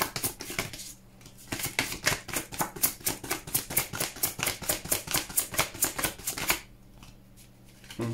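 A deck of tarot cards being shuffled by hand: a quick run of card clicks and slaps, about eight a second. There is a brief pause about a second in, and the shuffling stops about a second and a half before the end.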